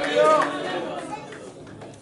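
A man preaching into a microphone: the end of a spoken phrase in the first half second, then the sound fades into a short pause.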